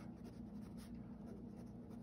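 Pen scratching faintly on sketchbook paper in short back-and-forth hatching strokes.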